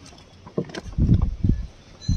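A few low thuds and splashes of pond water as floating plastic fish bags are handled and knocked about on the surface, loudest about a second in.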